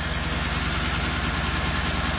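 Mercedes AMG engine idling steadily with an even, rapid pulse, running again after nine years of not starting.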